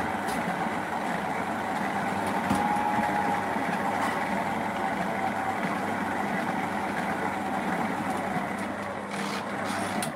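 Cheap electric stand mixer running steadily, a flat beater churning dry, powdery bicarbonate-soda bath bomb mix in a stainless steel bowl, with a faint steady motor whine.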